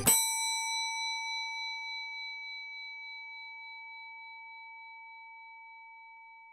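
Closing note of an outro jingle: one bell-like chime struck once, ringing on with a clear steady tone and fading slowly.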